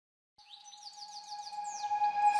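Background music fading in from silence about half a second in: a single held tone with a quick series of high, falling whistles over it, growing steadily louder.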